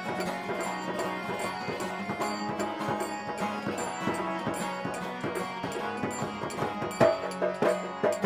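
Bengali folk music played live on acoustic guitar with dhol drum and mandira hand cymbals. The drum strikes get louder near the end.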